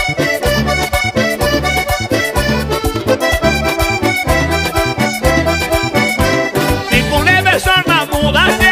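Instrumental passage of a vallenato song: diatonic button accordion playing the melody over bass and a steady percussion beat.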